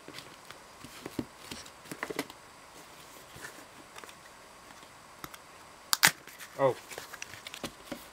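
Hands handling a cardboard shipping box and pulling at its tear-strip tab: scattered soft rustles and taps, then one sharp snap about six seconds in as the strip gives.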